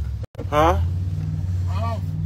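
Steady low rumble of a car's engine and road noise heard inside the cabin while driving, cutting out completely for a moment about a quarter second in.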